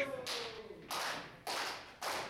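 Handclaps in a steady rhythm, four in two seconds, each sharp with a short echo off the hall.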